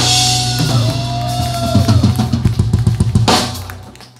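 Live rock band closing a song: electric guitar bending sustained notes over held bass while the drum kit plays a fast fill on bass drum, snare and toms. The fill ends in a loud cymbal crash a little over three seconds in, which rings out and fades.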